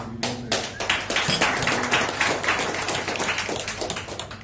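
Audience applauding: many hands clapping at once, starting abruptly and thinning out near the end.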